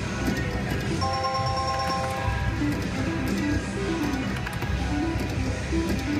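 Heatwave slot machine's electronic game sounds as the reels spin, with a held chord of chimes about a second in, over steady background music.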